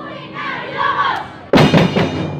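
A group of voices shouting together, then two loud drum strikes about a second and a half in.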